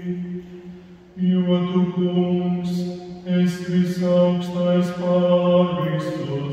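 A man's voice chanting a liturgical text on a nearly steady reciting pitch. It fades into a short pause about a second in, then goes on.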